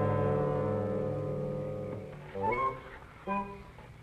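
Orchestral film score: a held chord fades away, then a short rising phrase and a brief chord follow near the end.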